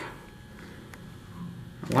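Quiet elevator-cab room tone: a faint steady hum, with a soft click about a second in.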